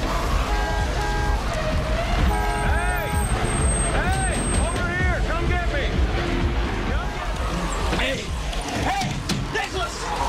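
Zombie moans and growls rising and falling in pitch, in clusters, over a loud, constant low rumble and music.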